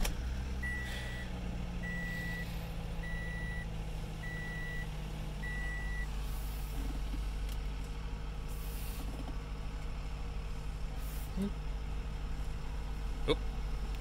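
2016 Toyota Camry's 2.5-litre four-cylinder engine starting and running at a steady idle, heard from inside the cabin. Over the first six seconds a dashboard warning chime beeps six times, about once a second.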